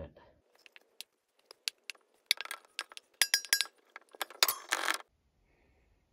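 Glass jar being handled: a run of light knocks and clinks of glass, with a couple of ringing clinks about three seconds in and a short scrape near the end.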